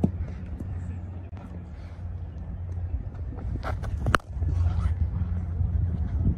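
Sharp knocks of a cricket ball on the bat in the practice nets, one at the start and two close together about four seconds in, over a steady low rumble.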